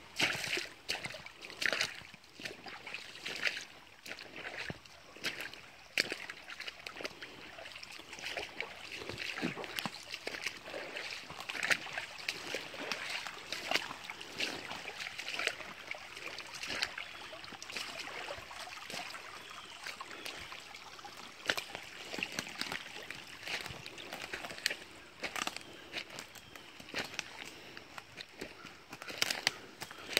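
Footsteps sloshing and splashing through a shallow, rocky creek, irregular splashes every second or so over the running water of the creek.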